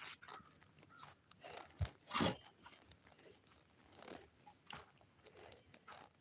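A person chewing crunchy food close to the microphone: faint, irregular crunches and mouth clicks, the loudest a little over two seconds in.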